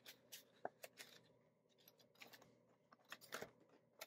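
Faint, scattered rustles and clicks of plastic envelope pockets and cash being handled in a small ring binder.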